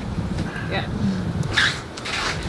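A short spoken "yeah" over a steady low outdoor rumble, with a brief hiss about one and a half seconds in.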